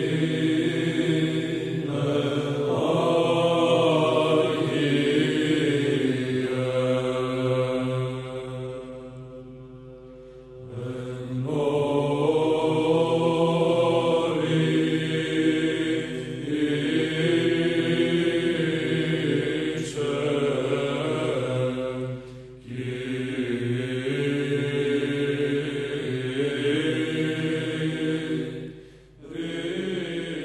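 Church chant sung in long held notes, phrase after phrase, pausing about a third of the way in and again briefly near the end.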